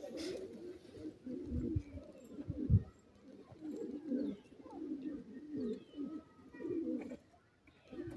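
Low, soft cooing bird calls repeating in short phrases, with two dull thumps in the first three seconds.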